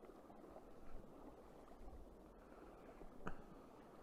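Faint, steady rush of river water, with one sharp click a little over three seconds in.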